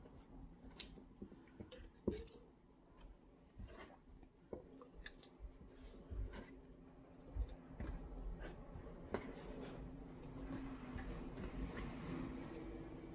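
Chopped tomato chunks dropped by hand into a plastic blender cup: scattered soft, wet taps and light knocks against the plastic, with small handling sounds on the countertop.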